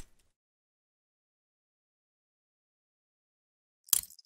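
Mostly dead silence: a short, sharp noise dies away in the first moment, then nothing for over three seconds until a single sharp click just before the end.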